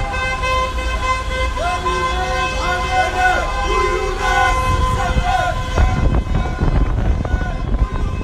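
Several car horns held down together in long steady blasts, with people shouting over them. About six seconds in, the horns give way to a heavy low rumble of moving traffic and wind on the microphone.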